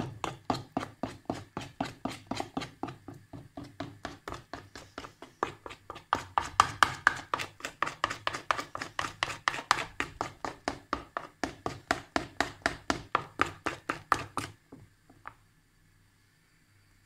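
A spoon beating cocoa cake batter in a bowl, knocking against the bowl in a steady rhythm of about four strokes a second. The stirring stops near the end, with one last tap.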